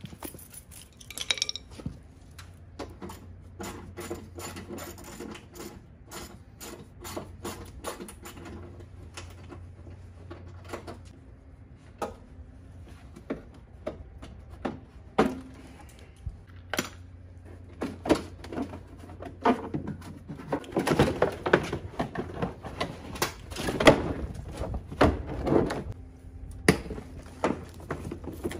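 Plastic fender liner being worked loose and pulled out of a pickup truck's front wheel well. Scattered clicks and knocks build into louder, denser scraping and rattling of the plastic over the last several seconds.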